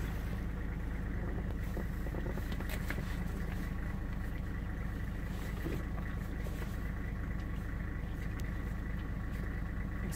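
Safari vehicle's engine running with a steady low drone, heard from inside the cab.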